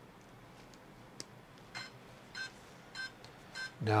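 A sharp click, then four short electronic beeps a little over half a second apart: a 60 A brushless ESC powering up and sounding its start-up tones.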